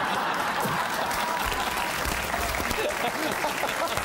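Studio audience applauding steadily, with laughter and voices mixed in.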